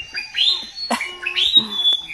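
Birds chirping: a quick run of short rising chirps and brief high whistles, close and clear.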